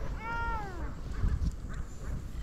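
A cat meows once, a short call that rises slightly and then falls away. About a second in come a couple of dull low knocks.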